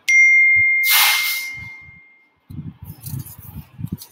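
A single bright electronic ding, like a notification chime, sounding at once and ringing on one high tone as it fades away over about two seconds. A short hiss comes about a second in, and a faint low murmur follows near the end.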